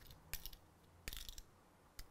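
Two faint small clicks from a Swiss Army knife's fittings being handled, the first about a third of a second in and the second about a second in.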